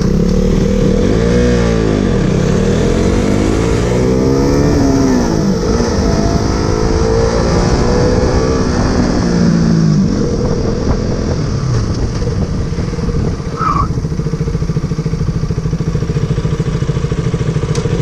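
Single-cylinder KTM RC sport bike engine heard from on board, accelerating with the revs climbing and dropping several times through gear changes for the first ten seconds or so, then easing off to a steadier, lower run.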